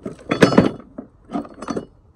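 Tools clinking and knocking in a plastic toolbox as an angle grinder is pulled out from among other tools and grinding discs: a loud cluster of clatter about half a second in, then a smaller one about a second later.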